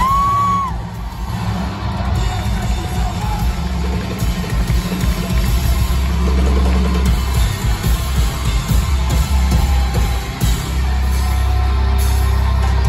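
Rock band playing live in a concert hall, with guitars and drums over a heavy low end, and the crowd cheering. A short high steady tone sounds near the start.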